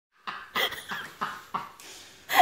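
A person laughing in a run of short breathy bursts, about three a second.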